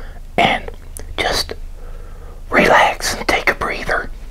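Close-miked, whisper-like mouth sounds in four short bursts over a faint steady hum.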